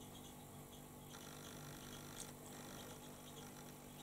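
Very quiet room tone with a faint steady low hum, and a faint soft tick about two seconds in.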